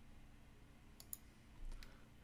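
Computer mouse clicking faintly: two quick clicks about a second in, then a soft low bump and another click near the end, over a faint low hum.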